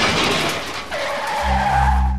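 Car tyres screeching in a skid, a loud squeal that eases off and comes back about a second in, then cuts off sharply at the end. A low, sustained music drone comes in under the second screech.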